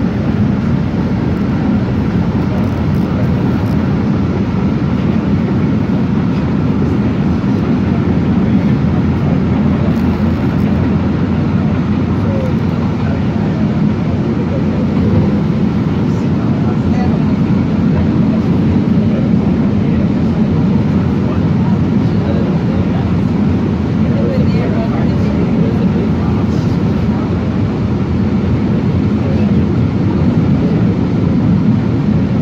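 MBTA Green Line light-rail car running through a subway tunnel, heard from inside the car: a loud, steady low rumble of wheels on rail and traction motors.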